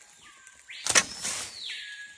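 Improvised bow trap being set off: one sharp snap about a second in as the bow releases.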